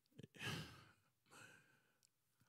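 A man's breath close into a handheld microphone: a heavy sighing exhale about half a second in, then a softer breath about a second later.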